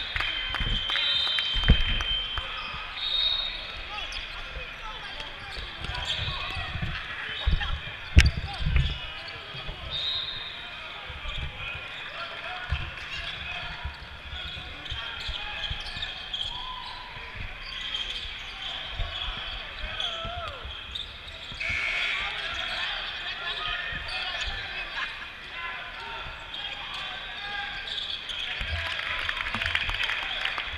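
Basketball game play: a basketball bouncing on a modular plastic sport-court floor amid players and spectators talking and calling out. A few sharper thuds stand out about two and eight seconds in.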